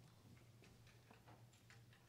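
Near silence: room tone with a low steady hum and a few faint, scattered small clicks.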